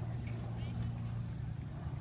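A steady low engine drone.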